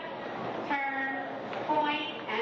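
A voice holding long, drawn-out notes at a few different pitches, heard twice, about a second in and again near the end.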